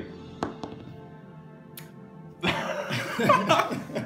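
A six-sided die thrown onto a cloth game mat, a few light clicks as it lands and tumbles in the first two seconds, over steady background music. About two and a half seconds in, a loud burst of voices reacting with laughter.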